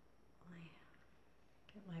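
Near silence: room tone, with one faint short vocal murmur about half a second in and a spoken word starting at the very end.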